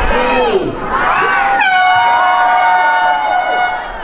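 A crowd shouting the last numbers of a countdown. Then, about a second and a half in, an air horn sounds one steady blast lasting a little over two seconds: the start signal of a running race.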